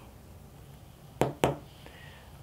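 Two short, sharp taps about a quarter of a second apart over quiet room tone.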